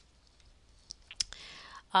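Faint room tone, then a few sharp computer keyboard and mouse clicks about a second in as spaces are deleted from a typed formula, followed by a soft hiss just before speech resumes.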